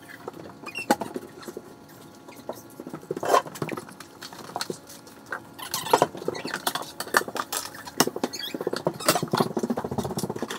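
Irregular knocks and clatter of kitchen activity, mixed with footsteps on a wooden floor.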